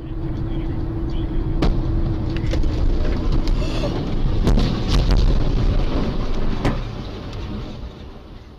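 Road noise inside a car on a highway as a heavy truck crashes just ahead: a series of sharp bangs and crashes, the loudest and heaviest about halfway through, with another bang a couple of seconds later before the noise dies down.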